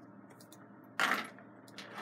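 Two brief rattling noises, the first about a second in and louder, the second near the end.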